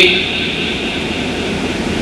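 Steady whooshing background noise with no clear rhythm or tone: the room tone of the lecture hall picked up by the lectern microphone.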